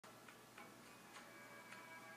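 Faint film soundtrack: soft ticks about every half second over quiet, steady held musical tones.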